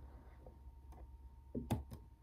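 A few soft clicks near the end, a finger tapping a laptop key, over a quiet room.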